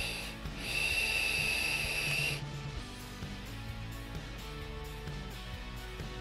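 A hit drawn on a sub-ohm vape tank with a 0.18-ohm mesh coil (Vaporesso Cascade Baby): air is pulled through the tank's airflow slots as a steady hiss with a high whistle. It starts about half a second in and lasts about two seconds, then stops.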